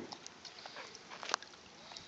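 Miniature schnauzer moving about in shallow water over rocks: light splashes and small clicks, the sharpest a little past halfway.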